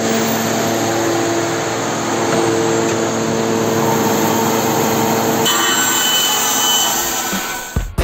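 Band saw running, a steady mechanical noise with a low hum, ready to trim a vacuum-formed plastic spoiler part. Music comes in near the end.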